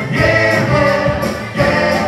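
Live soul band playing: a lead vocal over electric guitar, bass and drums, loud and full.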